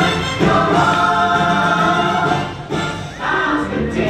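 Parade music with a choir singing, with a brief dip in loudness about three quarters of the way through.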